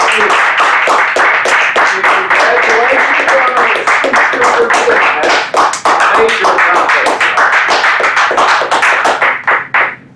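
Small audience applauding, many hands clapping densely and unevenly, thinning out and stopping near the end.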